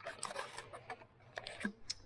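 Irregular small clicks and rustles of hands handling the camera and fitting an elastic band around it to hold it in place, picked up close to the microphone.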